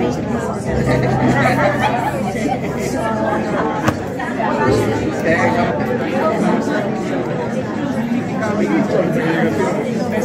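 Many people talking at once in a large hall: overlapping table conversations with no single voice standing out. A single sharp knock cuts through about four seconds in.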